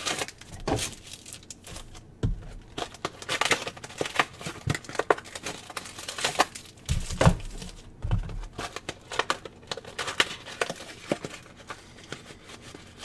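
Plastic wrappers crinkling and tearing as card boxes and packs are opened by hand, in quick irregular crackles, with a few dull knocks on the table.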